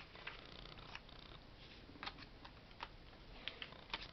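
Faint handling of paper cut-out pieces on a table: light rustling with a few separate soft clicks and taps as cards are picked up and laid down.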